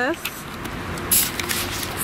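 Street ambience: faint steady traffic noise, with a brief hiss about a second in.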